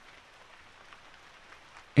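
Gentle rain falling steadily, a soft even hiss of rainfall laid under the reading as a background track.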